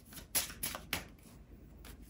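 Tarot cards being shuffled and handled by hand: a handful of short, crisp clicks at an irregular pace.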